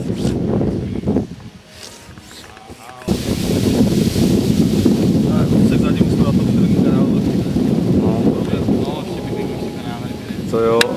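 Wind buffeting the microphone in a rough, steady rush, with faint voices underneath. It drops away briefly about a second in and comes back loud at about three seconds.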